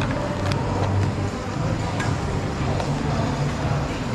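Steady roadside traffic noise, with a couple of light clicks of metal tongs against the plastic tubs and steel bowl.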